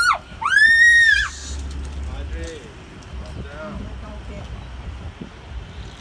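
A young girl's high-pitched scream, one cry that rises and falls, about a second long and starting about half a second in. After it comes a low steady rumble of a large airliner passing low overhead and traffic, with scattered faint voices.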